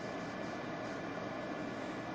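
Steady hiss of room tone and microphone noise, with no distinct sounds from the clay work.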